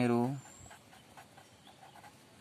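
A drawn-out spoken word ends about half a second in, followed by faint scratching of a pen writing on paper.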